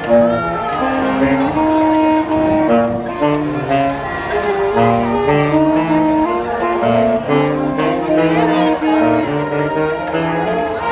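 Marching band wind section of saxophones and brass, including a sousaphone on the bass line, playing a tune together in held notes.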